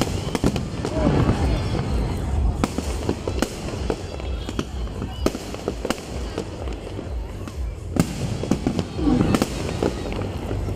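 Aerial fireworks display overhead: an irregular run of sharp bangs and crackling reports throughout, over a constant low rumble.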